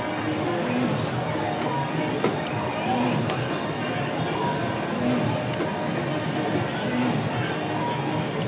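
Steady din of a casino slot floor: electronic music and chiming tones from slot machines, with short tones recurring about every two seconds as a VGT reel slot is spun.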